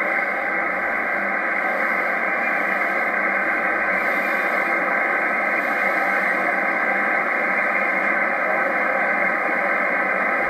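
Steady static hiss from an HF transceiver receiving lower sideband on 27.385 MHz in the 11-metre band, with no station transmitting: band noise heard through the narrow sideband filter, so it sounds thin and band-limited.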